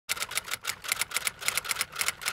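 Typewriter typing sound effect: a quick, even run of key clicks, about eight a second, that goes with on-screen text being typed out letter by letter.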